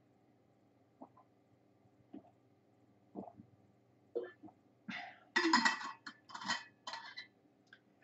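A woman drinking water from a bottle: faint swallowing sounds about once a second, then several louder short breathy sounds around five to seven seconds in as she stops drinking.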